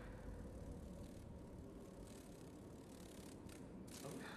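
Near silence: a faint, steady low hum with a faint held tone above it.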